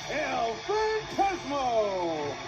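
A man's voice with long, drawn-out syllables: a winner announcement played back from the wrestling broadcast.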